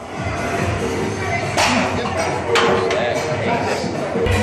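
Background music and voices, with two sharp metallic clanks about a second and a half and two and a half seconds in, as a loaded barbell is set back in the bench rack.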